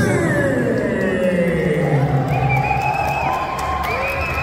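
A ring announcer's long drawn-out call over the arena PA, sliding down in pitch over the first two seconds or so, with the crowd cheering and music playing under it.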